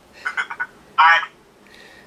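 A man laughing over a video-call connection: a few short chuckles about a quarter of a second in, then one louder burst of laughter about a second in.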